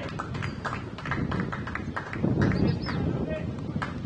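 A quick, irregular run of sharp clicks, several a second, over indistinct outdoor voices and a low rumble.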